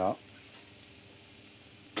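Poultry meat and diced onion and carrot frying in a stainless steel sauté pan on a gas burner, with a steady sizzle.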